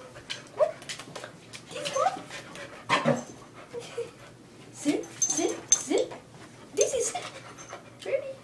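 Dog whining in short, rising cries, about six of them, begging and frustrated as it jumps for something held just out of its reach. A few sharp knocks sound among the cries, the strongest about three seconds in.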